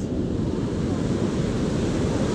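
Ocean surf breaking and washing up the beach, a steady rush of noise with wind rumbling on the microphone.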